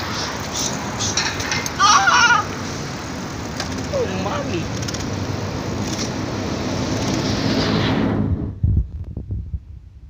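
Steady rushing noise of wind and road on the microphone of a moving phone during a bicycle ride, with a short shout about two seconds in and a voice calling out around four seconds. The rushing drops away about eight seconds in, leaving a few low thumps.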